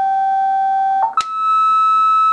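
Steady electronic test tone from the scrambler's loudspeaker. About a second in there is a click, and the tone jumps to a steady higher pitch: the pitch inversion produced when only one GK IIIb scrambler set is scrambling the tone.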